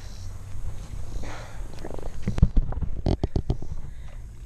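A bass being let go by hand into shallow pond water: a low rumble of handling close to the microphone, then a quick run of splashes and knocks for about a second and a half past the halfway point.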